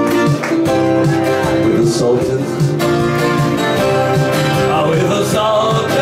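Twelve-string acoustic guitar playing an instrumental passage of a rock song, chords and picked notes in a steady rhythm.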